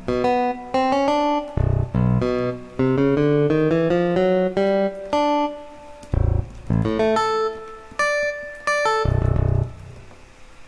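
MuseScore's sampled playback sounds playing short, separate plucked-string notes, guitar- or bass-like, some in stepwise rising runs, as notes are entered and auditioned in the score. A few deep thuds come in between the notes.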